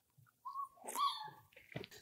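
Five-week-old German Shorthaired Pointer puppy giving two short, faint, high-pitched whines, about half a second and a second in.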